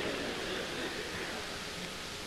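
Lecture-hall audience laughter dying away into the steady hiss of an old recording.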